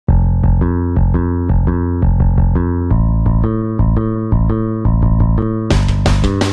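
Music: a quick repeating keyboard figure over a bass line, moving to a new chord about halfway through. Near the end, drums with cymbal crashes come in and the band turns heavy.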